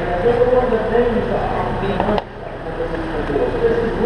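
Voices talking in the background, not close to the microphone, with a single sharp click a little over two seconds in, after which the sound briefly drops in level.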